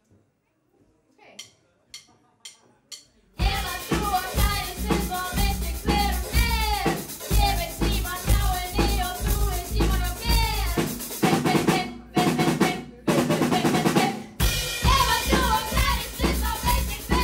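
Four drumstick clicks counting in, about half a second apart, then a live rock band crashes in loud on the next beat: drum kit, bass and electric guitar playing together, with a few abrupt short stops near the end.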